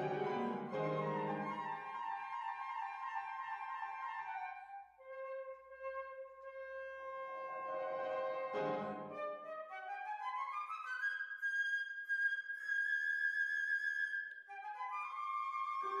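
Concert flute playing with grand piano accompaniment: piano chords open, the flute holds a low note, and after another piano chord it climbs in a quick run to a high held note.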